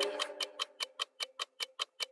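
Stripped-down breakdown of a psytrance track: the tail of the previous sound fades over the first half second, leaving only a dry ticking percussion pattern of about five clicks a second.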